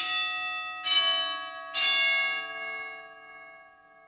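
Altar bell struck three times at the elevation of the host after the consecration, the strikes about a second apart, the last left to ring out and fade slowly.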